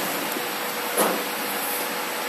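Automatic folder-gluer machine running: a steady mechanical whir and hiss with a faint steady hum, and a single knock about a second in.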